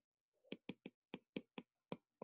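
A stylus tip tapping on a tablet's glass screen during handwriting: a run of about seven quick, faint clicks, starting about half a second in.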